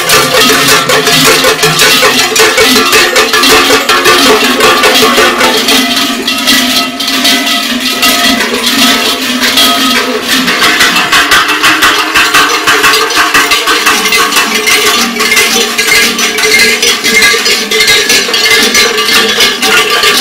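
Many large cowbells worn in clusters at the belts of Scheller carnival dancers, clanging and ringing together in a dense, continuous jangle as they dance.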